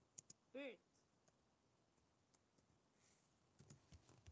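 Near silence, broken by a few faint computer-keyboard keystrokes as a search term is typed, with a brief faint pitched sound about half a second in.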